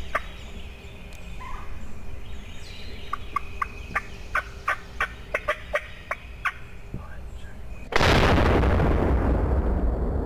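A wild turkey giving a series of about a dozen short, sharp putts, roughly three a second, then a single 12-gauge shotgun blast near the end that rings out with a long, slowly fading echo.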